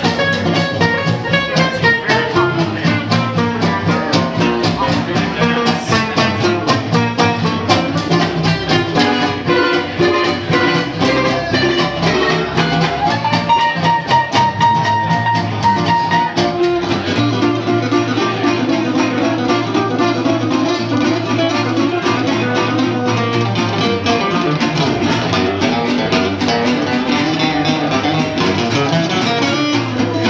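Small traditional New Orleans jazz band playing live: trumpet, trombone, guitar and upright bass over a steady beat. One long high note is held about halfway through.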